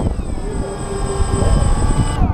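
DJI Phantom quadcopter's electric motors and propellers whining steadily as it sits on the ground with the rotors still spinning, a stack of several steady tones over a low rumble.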